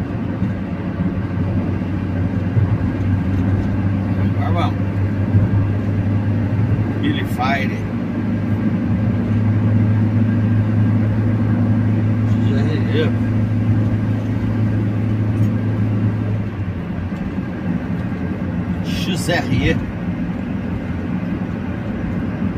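Engine and road noise heard inside a Fiat Fiorino cab cruising in fourth gear: a steady low drone that drops away about sixteen seconds in.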